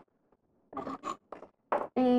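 Three short scraping rustles in the second half, from a hand and sleeve moving across paper and into a plastic tray of oil pastels.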